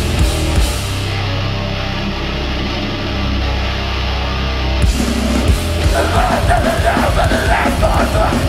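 Hardcore band playing live at the start of a song: a heavy distorted guitar and bass chord comes in together and rings out, then about five seconds in the drums join with a steady beat and shouted vocals start.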